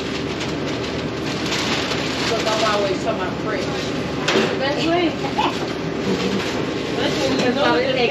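Restaurant kitchen and counter ambience: a steady rushing background noise with indistinct voices of staff and the occasional clatter and rustle of orders being packed.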